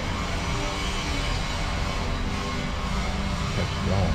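Steady low rumbling hum of city street ambience, with a short rising tone just before the end.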